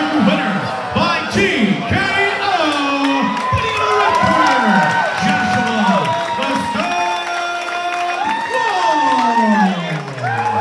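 Crowd cheering and shouting, several voices holding long yells over one another, with some scattered claps, as a boxing bout's result is given.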